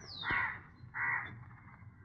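A crow cawing twice, two short harsh calls under a second apart, just after a brief falling whistle.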